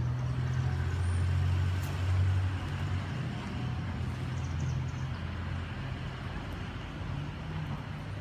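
Low, steady rumble of a motor vehicle's engine with traffic noise, loudest in the first half and easing off after about five seconds.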